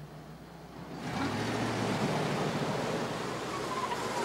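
A car driving by, its engine and tyre noise swelling about a second in and holding steady.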